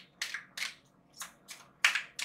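A deck of large oracle cards being shuffled in the hands: a run of crisp card snaps and slaps at an uneven pace, the loudest one just before the end.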